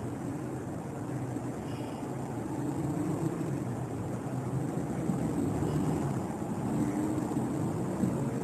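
Steady low background rumble with no speech, growing slightly louder a couple of seconds in.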